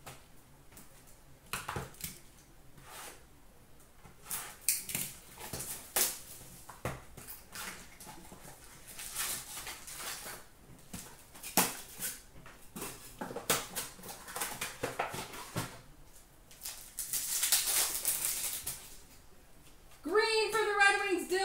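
Hands opening a cardboard hockey card box and its wrapped packs: irregular crinkles, taps and rustles of cardboard and wrapper. A longer, denser tearing rustle comes a few seconds before the end as a pack is ripped open.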